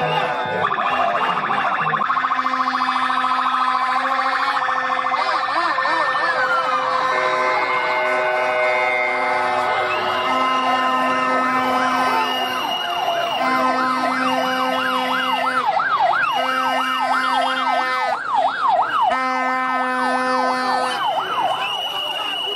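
Motorcade escort sirens, several sounding at once: fast up-and-down yelping sweeps over a steady tone that repeats in blasts about two seconds long.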